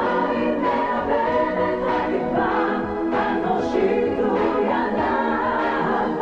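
Live concert music: many voices singing together over a steady backing, with light percussive hits every second or so.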